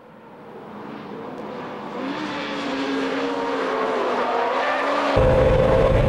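Honda Integra Type R DC2's 1.8-litre VTEC four-cylinder running hard on a race track, heard from trackside, growing steadily louder as the car comes nearer. About five seconds in it cuts to a much louder in-car sound of the engine with heavy cabin and road drone.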